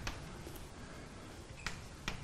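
Chalk tapping on a blackboard as a diagram is drawn: a couple of short, sharp clicks, one right at the start and one about a second and a half later, over quiet room tone.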